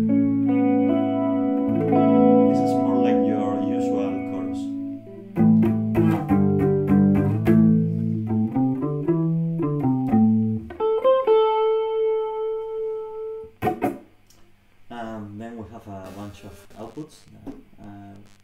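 Electric guitar played through a Fender J.A.M. amplifier's clean channel with its built-in chorus set subtle: sustained chords ring for about ten seconds, then a single held note rings out until a sharp click. A low voice follows near the end.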